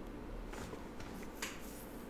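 Quiet room with a few faint clicks and soft rustles close to the microphone, the sharpest about one and a half seconds in, as a hand is raised to the face.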